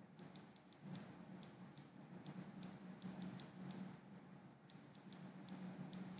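Faint, irregular light clicks of a stylus tip tapping a drawing tablet as handwriting is written, a few per second, over a low steady hum.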